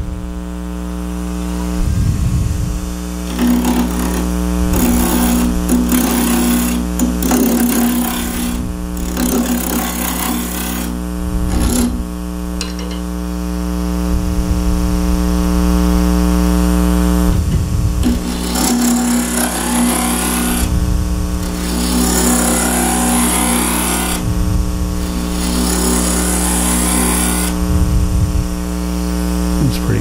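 Wood lathe running with a steady electric hum, with two long stretches of rough, intermittent scraping and knocking noise over it.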